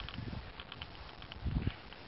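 Wind buffeting the microphone in low rumbling gusts, one at the start and a stronger one about a second and a half in, with faint scattered ticks above it.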